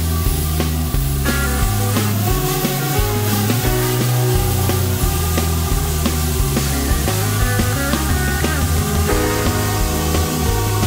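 Background music with a steady beat and a bass line that moves between sustained notes.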